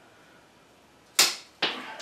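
Bonsai branch cutters snipping through a Japanese maple branch. There is one loud, sharp snap about a second in and a second, weaker snip just after.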